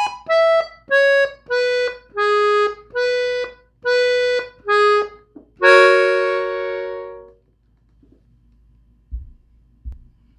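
Gabbanelli three-row diatonic button accordion, tuned in E, playing a slow phrase of about eight short separate notes, roughly two a second. It ends on a long held chord that fades away. Two soft low thumps come near the end.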